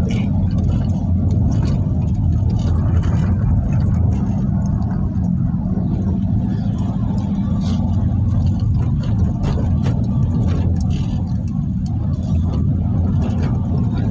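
Steady low rumble of a car's engine and tyres on the road, heard from inside the cabin while driving at a constant speed.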